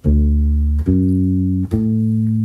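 Fender Precision electric bass playing a D major triad arpeggio: three plucked notes, the root D, the major third and the fifth, evenly spaced and each ringing until the next.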